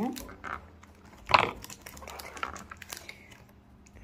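Crinkling and tearing of an advent calendar's cardboard door and packaging as a small chocolate is pulled out, with one sharp, loud crack about a second and a half in.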